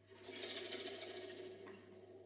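Solo viola played with a soft, airy, grainy bow sound that has little clear pitch. It swells in about a quarter second in and fades away before the end.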